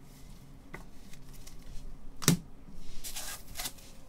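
Trading card and rigid plastic card holder handled in gloved hands. There are a few light clicks, one sharp plastic clack a little past two seconds in, then a short scraping slide.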